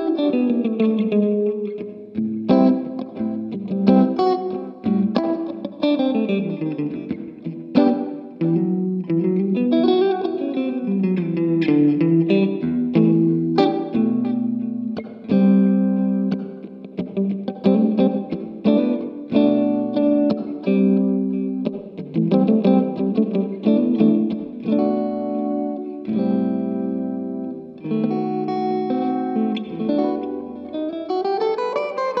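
Fender Stratocaster electric guitar played through an amp: jazz chords with single-note runs moving up and down the neck between them.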